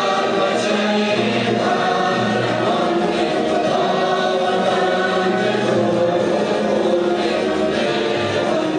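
A choir singing with musical accompaniment, sustained and steady, played over a hall's sound system.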